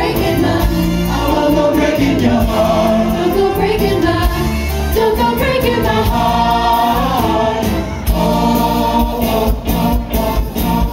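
A show choir singing a pop-gospel number together in harmony over instrumental accompaniment with a steady drum beat, heard through the hall's room sound.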